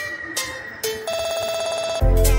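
Electronic music or electronic tones. About a second in, a steady, rapidly trilling electronic tone like a phone ringing takes over.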